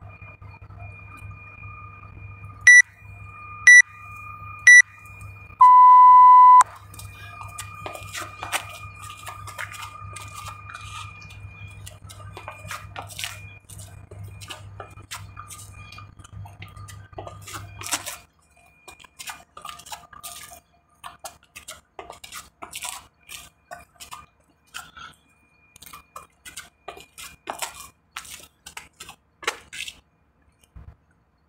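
Interval timer counting down: three short beeps about a second apart, then one longer beep marking the start of the next work round. Scattered crunches and scuffs on gravel follow as the burpees begin.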